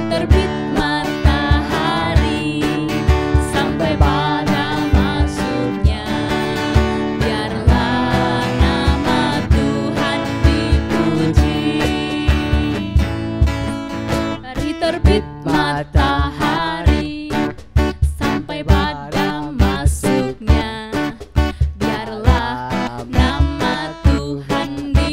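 Upbeat children's praise song: a woman singing over a strummed acoustic guitar, with a steady beat underneath.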